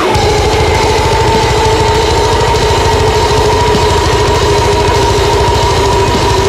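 Deathcore metal: one high note held for several seconds, sliding down right at the start and bending back up near the end, over fast, even, machine-like low drumming.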